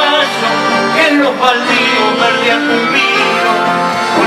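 Live folk music led by an acoustic guitar, played with other sustained instruments.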